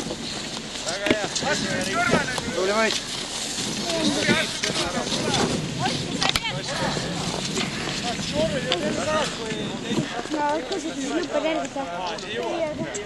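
Several people's voices talking and calling out over an outdoor background noise, with scattered sharp clicks and one louder click about halfway through.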